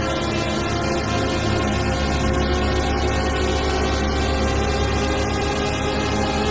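Madwewe handmade six-oscillator mini drone synthesizer sounding a dense, steady drone: many held tones stacked from deep bass upward, with a fast pulsing beat in the bass where the oscillators interact, while its pitch knobs are turned slowly.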